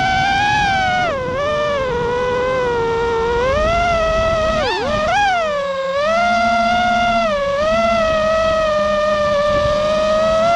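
FPV quadcopter's brushless motors and propellers whining, heard through the onboard camera; the pitch dips and climbs with the throttle, with a quick rise and fall about five seconds in, then holds fairly steady.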